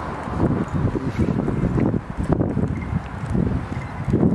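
Wind blowing on the camera microphone in uneven gusts.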